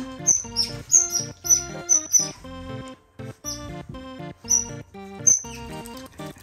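Asian small-clawed otter giving short, high-pitched chirps over background music. The chirps come about every third of a second in the first two seconds and then three more times, spaced out, later on.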